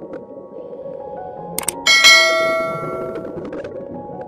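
Subscribe-button animation sound effect: two quick clicks about a second and a half in, then a bright bell ding that rings out over about a second.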